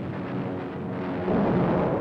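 Explosion on an old newsreel soundtrack: a low rumbling noise that swells into a louder blast about a second and a quarter in, with faint steady tones beneath it.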